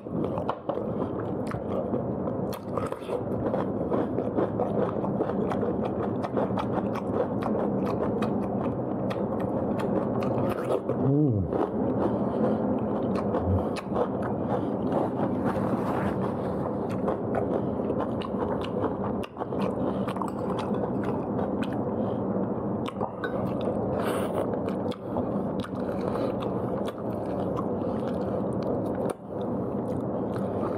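Close-miked eating: a person chewing and biting food with many small wet clicks and crunches. A short falling tone comes about eleven seconds in.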